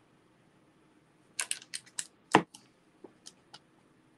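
Quick plastic clicks and taps from handling rubber-stamping supplies, a hinged ink pad case and a clear acrylic stamp block, with one louder knock in the middle of the run.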